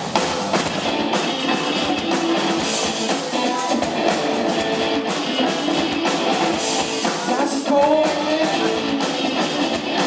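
Rock band playing live: two electric guitars, bass guitar and drums, with a few sliding guitar notes about seven and a half seconds in.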